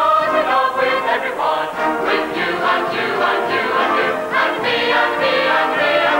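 A mixed choir of men and women singing a gospel song, accompanied by a band with brass.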